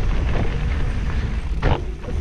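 Mountain bike riding along a dirt forest trail: a steady low rumble of wind buffeting the bike-mounted microphone mixed with tyre and bike noise, with one short, louder burst of noise near the end.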